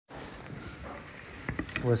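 Steady background hiss of the recording, with a few short clicks about a second and a half in, then a man begins speaking.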